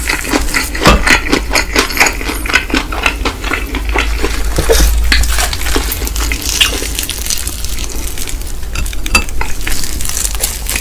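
Close-miked chewing of crispy fried chicken: a dense run of wet crunches and crackles that thins out toward the end.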